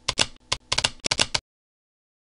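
Keys typing in a quick, uneven run of sharp clicks, about ten a second, which stops about one and a half seconds in.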